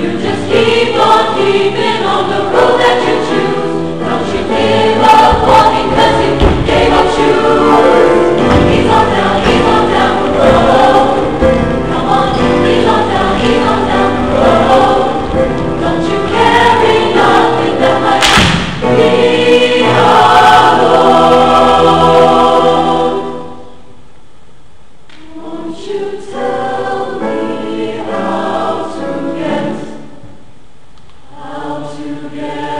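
Mixed choir of young men and women singing a full, loud choral arrangement, with a few thumps in the middle. About 23 seconds in the sound drops away to a quieter, sparser passage of voices.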